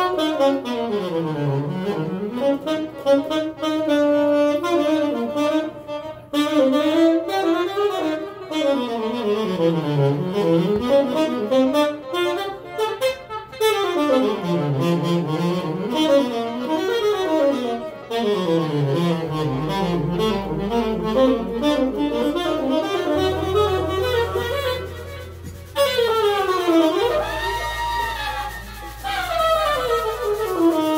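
Live jazz band with a saxophone soloing in fast runs that climb and fall. Electric bass notes come in low underneath during the second half.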